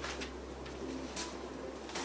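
Vinyl record sleeves being handled, with brief paper-and-cardboard rustles at the start and about a second in, over a steady low hum.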